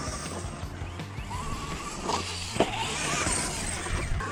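Distant RC monster truck's electric motor whining, rising and falling in pitch as the throttle is worked, over a steady low hum.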